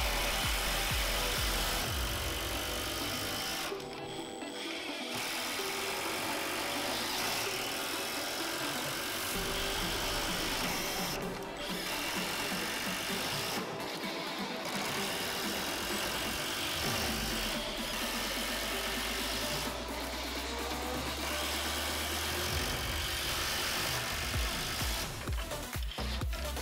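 Background music over the rapid hammering rattle of two cordless impact drivers sinking long screws into timber. The rattle stops briefly a few times between screws.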